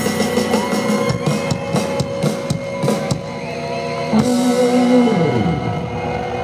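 Live rock band with drums and electric guitar playing a song's ending: drum strikes over sustained notes, then a loud held low note that slides down in pitch over the last couple of seconds.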